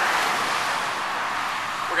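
A car going by on a nearby road: a smooth rushing of tyres and engine that slowly fades.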